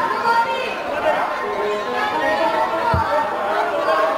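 Speech: stage dialogue between the actors, with a single low thump about three seconds in.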